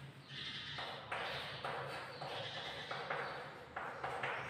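Chalk writing on a chalkboard: short scratchy strokes, about two a second.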